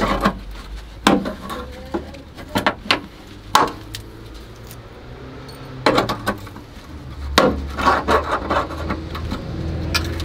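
A hand tool prying and bending at the rusty steel lip of a car's rear wheel arch: irregular sharp metal clicks, knocks and scrapes in clusters, with a quieter spell in the middle.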